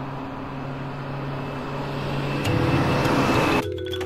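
Busy city road traffic: a steady mix of car engines and tyre noise that swells toward the end and cuts off abruptly about three and a half seconds in.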